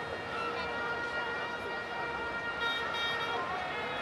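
Faint voices of people close by, over a steady high-pitched whine made of several held tones that do not rise or fall.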